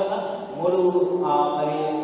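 A man's voice speaking into a microphone in a drawn-out, chant-like preaching cadence, with long-held vowels: a Telugu interpretation of the preacher's call to lift up the Bible.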